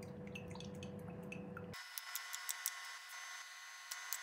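Faint scattered light clicks and taps of a metal spoon in a plastic mixing bowl over low room tone. About two seconds in, the background hum changes abruptly.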